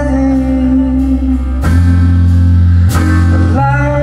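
Live band playing blues-rock: electric guitar, bass guitar and drum kit, with held chords over a heavy bass. The chord shifts about a second and a half in, with cymbal crashes then and again near three seconds.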